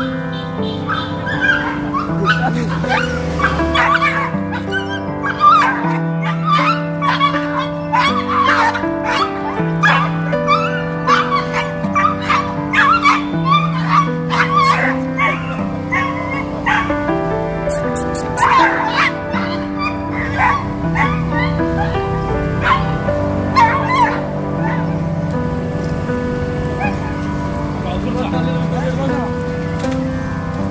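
Background music of steady held chords, over which a dog yelps and whimpers again and again. These are the cries of a stray dog restrained on a catch pole.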